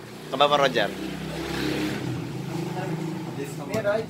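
A motor vehicle's engine running steadily, with a brief rush of noise in the middle, after a short shout about half a second in.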